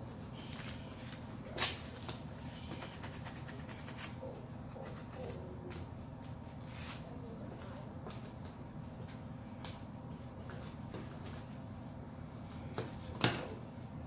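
Fingers rubbing and smoothing a sheet of vinyl decal on transfer tape against a table, soft rustling and scraping over a steady low hum, with a sharp tap about a second and a half in and another near the end.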